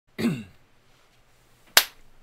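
A single sharp hand clap just before the end, palm to palm. Near the start there is a brief voiced sound that falls in pitch.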